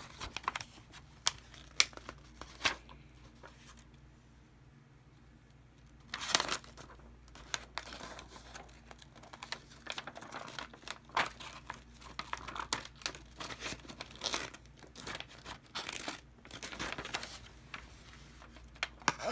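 Small safety scissors snipping into a sheet of printer paper, with the paper rustling and crinkling as it is bent and handled. A few sharp snips come in the first three seconds, then a quiet pause, then uneven bursts of rustling and cutting.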